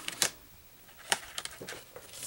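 A few short sharp taps and light rustles of cardstock being handled as a paper pocket is pressed into place, the loudest tap about a quarter second in.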